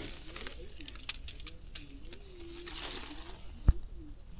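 Faint rustling and light clicks of lychee branches and leaves being handled, with one sharp knock near the end. A faint distant voice wavers underneath.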